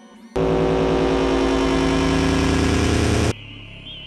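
A loud, dense, steady drone with an engine-like hum and many held tones. It starts abruptly just after the beginning and cuts off suddenly about three seconds in, leaving a faint warbling high electronic tone.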